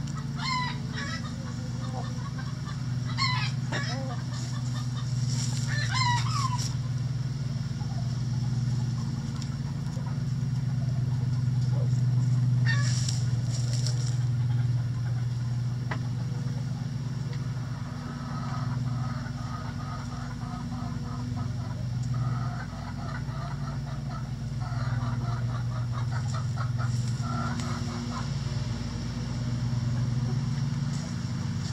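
Backyard chickens calling in a coop: short rising calls in the first few seconds and again about halfway, then a run of quick, low clucking in the last third. A steady low hum runs underneath throughout.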